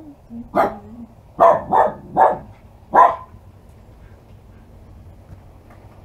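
A small dog barking about five times in quick, sharp barks over the first three seconds, then falling quiet, as visitors arrive at the house.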